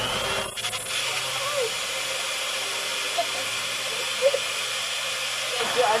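Electric hand mixer running steadily, its beaters whipping kefir and flaxseed oil in a glass measuring cup: an even motor whine and hiss, with a few light clicks about half a second in.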